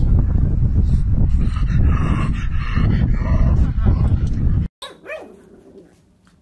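A pug making whining, bark-like calls over a loud low rumble. After a sudden cut near the end, one short, quieter whine from a puppy.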